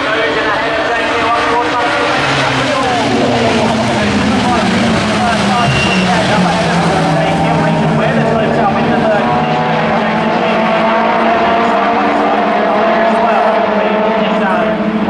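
A pack of Super Touring race cars going past, many engines revving hard at once. Their pitches overlap and rise and fall as the cars change gear and brake for the corner.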